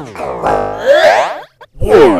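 A cartoon character's voice exclaiming gleefully, run through a heavy audio effect that bends its pitch in repeated swooping arcs. It comes in two bursts, the second starting just before the end.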